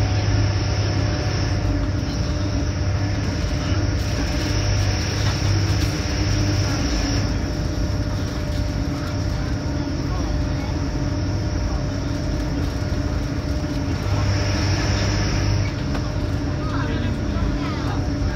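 Inside a diesel passenger train running at speed: a steady low engine hum over wheel-on-rail rumble. A thin high whine sits above it, fading out about seven seconds in, coming back for a couple of seconds near fourteen seconds, then fading again.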